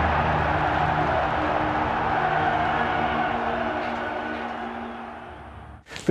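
Programme opening theme music ending on a long held chord over a wash of noise, fading out over the last two seconds or so.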